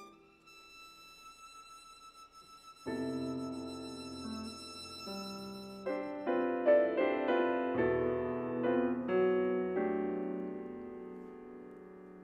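Violin and grand piano playing a classical sonata. The violin holds a soft, high sustained note, the piano comes in with chords about three seconds in, and its playing grows busier and louder from about six seconds.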